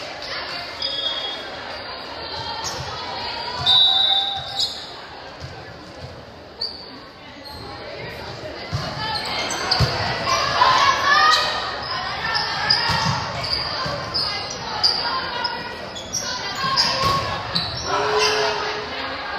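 Volleyball rally on an indoor hardwood court: the ball is struck by hand and thuds off arms and the floor several times, with brief sneaker squeaks on the court. Players call out and spectators talk, echoing in the large gym.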